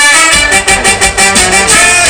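Loud live band music blasting from a carnival sound truck. A horn-like melody plays over fast, steady percussion, and the heavy bass kicks back in a moment after the start.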